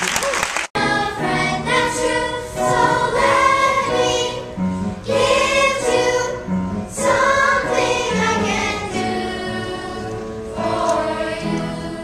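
A young chorus singing a show tune together in held, sustained notes. The sound cuts out for an instant just under a second in.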